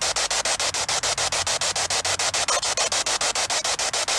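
Handheld spirit box sweeping through radio stations: loud, steady white-noise static chopped by rapid, regular breaks, about ten a second.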